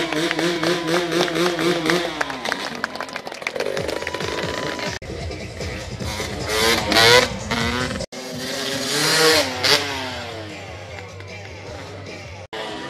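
Dirt bike engine revving up and down as it is ridden through a wheelie, with music also playing. The sound cuts off abruptly about five and eight seconds in, where the footage is edited.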